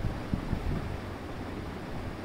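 Steady low background rumble and hiss of the recording room, with no speech.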